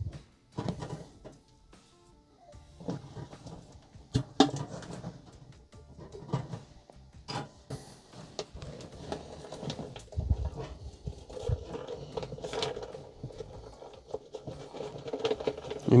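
Clicks and knocks of a glass mason jar and its metal lid being opened and set down, and a plastic rice pouch handled, with rice starting to pour into the jar near the end. Faint background music runs underneath.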